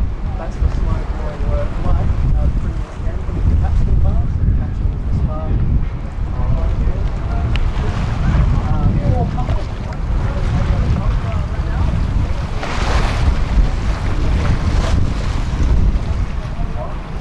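Wind buffeting the microphone over water washing along the hull of a tall ship under sail, with a brief louder rush of water about thirteen seconds in.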